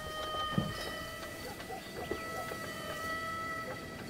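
Quiet ambient sound bed: several steady high tones held and overlapping, coming and going, with faint scattered clicks underneath.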